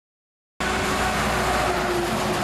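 Silence, then about half a second in, the steady noise of a loaded car-carrier truck driving along a road: engine and tyre noise.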